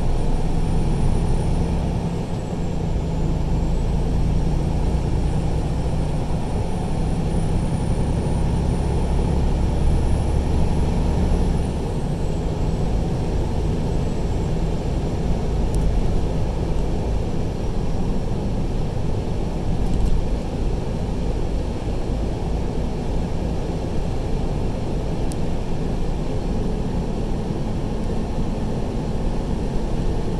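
Steady low rumble of a truck's engine and tyres at highway speed, heard from inside the cab. The deepest part of the drone eases off about twelve seconds in.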